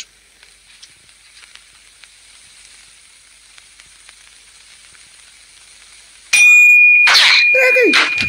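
Faint crackling hiss of an old cartoon soundtrack. About six seconds in, a loud cartoon sound effect comes in suddenly: a steady high whistle-like tone with a quick sweep and a falling glide.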